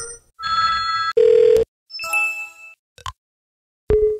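Windows system sound files played one after another, each short and separate, including the Windows Ringin and Windows Ringout telephone-style ringing sounds. The run ends on the start of the Windows User Account Control chime.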